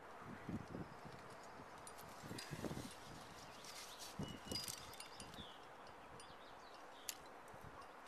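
Faint scuffs and light metallic clinks from a lead climber's rack of carabiners and cams as he moves up the rock, with one sharp click about seven seconds in.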